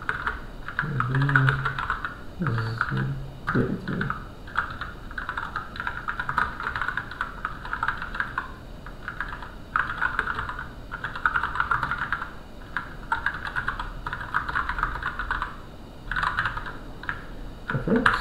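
Typing on a computer keyboard: quick runs of keystrokes broken by short pauses.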